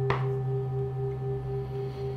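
Large hand-held Tibetan singing bowl ringing after a strike: a steady low hum with a higher tone that wavers, pulsing about three times a second. A light knock sounds just after the start.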